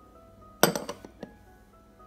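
A sharp clink of glass on glass about half a second in, then two lighter ticks, as small glass ingredient bowls are handled against each other, over soft background music.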